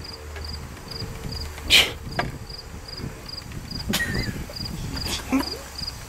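Cricket chirping steadily, about two to three short high chirps a second. A few sharp knocks or clatters cut in, the loudest about two seconds in and two more near the end.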